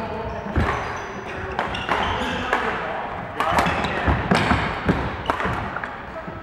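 Badminton play in a large sports hall: sharp racket hits on the shuttlecock and players' feet on the wooden floor, many short impacts in an uneven rhythm, echoing, with players' voices.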